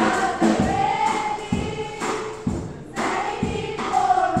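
Children's choir singing a gospel song, with a steady low beat about once a second underneath.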